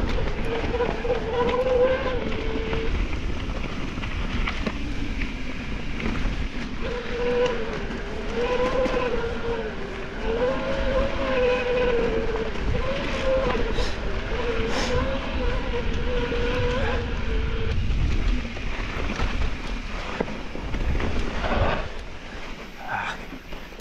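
Electric mountain bike's drive motor whining while the rider pedals, its pitch wavering up and down, over tyre rumble on a dirt trail and wind on the microphone. The whine drops out for about four seconds near the start and again for the last few seconds.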